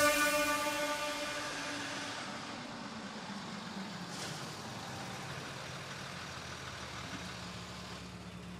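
A Range Rover Sport SUV driving up and pulling to a stop, its engine settling to a low, steady idle near the end. A wash of sound fades away over the first two seconds.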